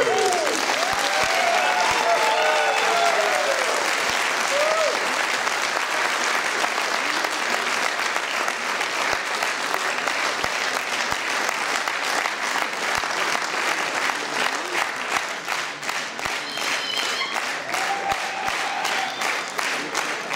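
Audience applauding at the end of a brass-band-accompanied folk dance, the band's music stopping right at the start. A few voices are heard over the clapping in the first few seconds.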